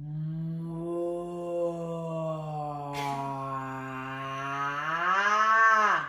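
A woman's voice holding one long, low note, like a chanted 'om', as a meditative vocal exercise. Near the end it swells louder and rises in pitch, then stops.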